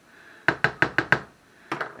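A slotted plastic spatula knocked about six times in quick succession against a frying pan, then two more clicks as it is set down on the counter.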